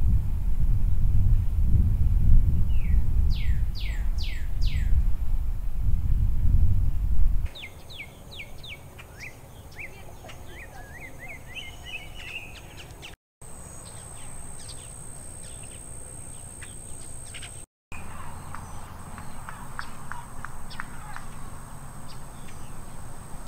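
Wild birds chirping and calling outdoors: under a loud low rumble for the first seven seconds or so, with a run of four falling whistled calls, then clearer quick chirps and trills. Later a steady high-pitched whine runs beneath the calls, and the sound cuts out briefly twice.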